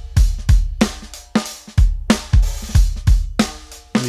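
Recorded drum kit played back in a mix: kick, snare and cymbals in a steady beat, about two hits a second. This is the overhead-microphone drum track, run through a Neve-style channel strip plugin with light two-to-one compression.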